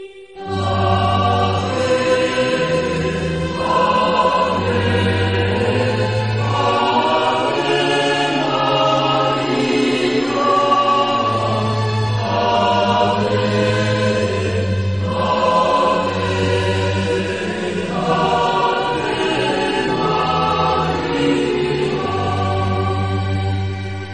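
Choir singing slow sacred music with long held notes over a low sustained bass line, starting about half a second in.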